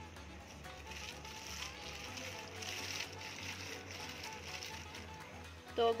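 Faint background music, with a soft, even rustle of a plastic sheet as a rolling pin rolls dough beneath it.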